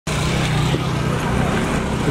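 Street traffic of small engines, auto-rickshaws and a motorcycle, running with a steady low drone under an even noise.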